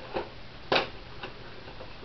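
Plastic clicks from a Nerf Sonic Deploy CS-6 blaster as its release button is pressed and it folds from blaster mode into its compact stealth mode: three short clicks, the loudest a little under a second in.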